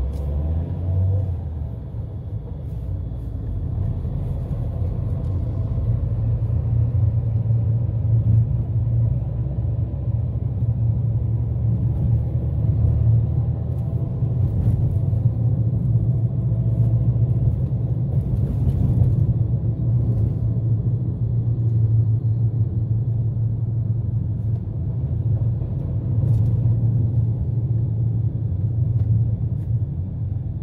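Steady low rumble of a car's engine and tyres, heard from inside the cabin while driving along a road.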